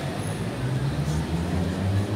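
Steady low engine rumble of city traffic, under faint crowd voices.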